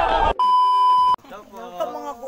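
A crowd's shouting cuts off abruptly, and an edited-in electronic beep, one steady high tone, sounds for under a second and stops suddenly.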